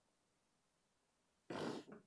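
Near-silent room, then near the end one short burst of breath noise from a man, about a third of a second long, with a smaller one right after it.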